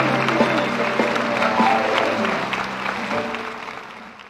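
Instrumental music with audience applause, fading out toward the end.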